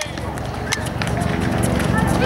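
Outdoor futsal game sound with no close voice: a low steady rumble that slowly grows louder, faint background voices, and two or three short sharp knocks about a second apart.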